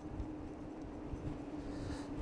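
Faint ride noise from a Hovsco Porto Max electric scooter in motion: a steady thin hum from its electric motor over a low rumble of tyres on pavement and muffled wind.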